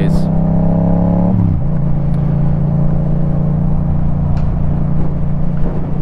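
Motorcycle engine running while riding, with a steady note whose pitch drops about a second and a half in, then holds lower, over low wind rumble.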